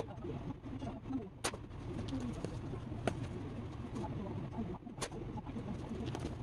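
Slingshot shots striking a cardboard box target draped with jeans: four sharp cracks about one and a half to two seconds apart, the first the loudest. Pigeons coo softly in the background.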